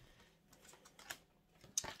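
Tarot cards being handled: faint, scattered soft clicks and taps, with one sharper click near the end.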